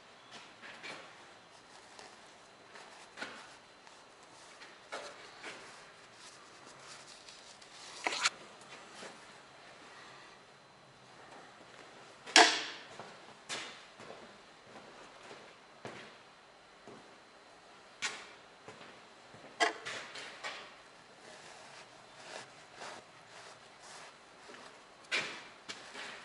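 Scattered clicks and knocks of tools and metal parts being handled on a workbench, at irregular intervals, the loudest a sharp knock about halfway through.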